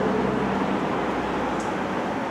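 Street traffic noise: a passing vehicle's low engine hum fades out about half a second in, leaving a steady rush of road noise that slowly dies down.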